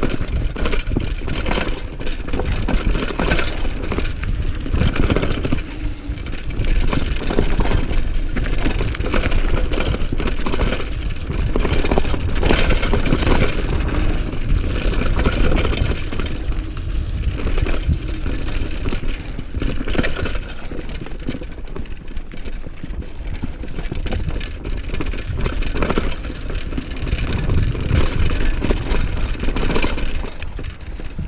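Mountain bike descending a rocky dirt trail at speed: a steady rumble of wind on the microphone mixed with tyres on dirt and stones. The bike rattles and knocks over bumps.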